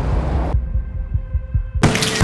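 Trailer sound design: a low, throbbing bass pulse like a heartbeat. A hiss fades out about half a second in, and a sudden hit comes near the end.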